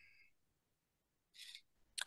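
Near silence: room tone, with one brief faint hiss about one and a half seconds in.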